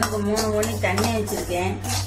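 A perforated steel ladle scrapes and clinks against the inside of an aluminium kadai as dry rice grains are stirred in it, in a run of short, uneven strokes.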